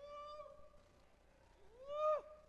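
A faint voice sounding a drawn-out 'ooh' twice, each call scooping up in pitch, holding, then dropping off; the second call is louder.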